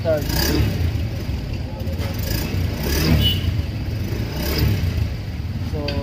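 Honda Beat scooter's small single-cylinder engine idling steadily, started with the brake lever held.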